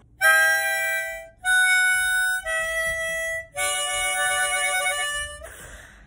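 Harmonica played in four held chords of about a second each, separated by brief gaps; the last chord is the longest and trails off into a breathy puff.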